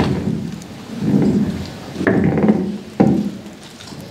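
Low, muffled thumps and rumbling, starting suddenly about once a second.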